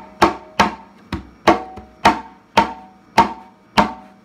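Ash-wood conga (tumbadora) struck by hand about twice a second, eight strokes in all, each ringing briefly with a clear pitch. The left hand rests on the head in the way of the stroke, shaping the resonance.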